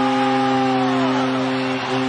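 Arena goal horn blaring a steady low tone over a cheering crowd, signalling a Colorado Avalanche goal.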